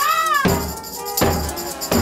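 Live band playing with a beat about every 0.8 s and a high jingling tambourine over it. In the first half second a single high pitched note arches up and back down.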